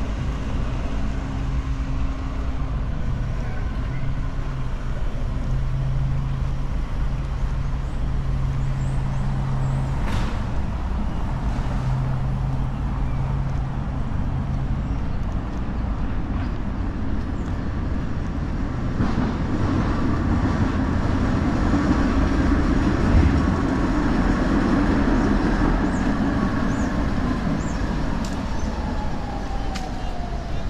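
City road traffic heard from a park: a steady rumble of passing vehicles. It swells as a heavier vehicle passes in the second half, and a whine falls in pitch near the end.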